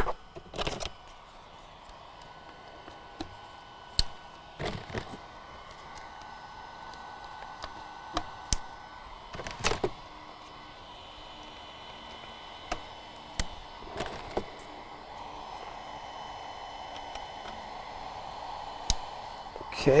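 Scattered light clicks and knocks as propellers are handled and fitted onto a DJI Inspire 2 drone, a dozen or so spread irregularly, over a steady faint background hiss.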